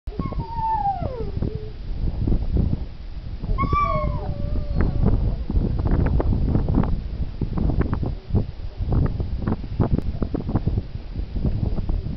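A husky-type dog gives two whining calls in the first few seconds, each gliding down in pitch. Then a quick run of crunching, scuffing strokes in snow as the dog noses into it.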